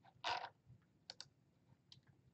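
A few faint clicks at a computer keyboard and mouse: a soft one just after the start, a quick pair past the middle and another near the end.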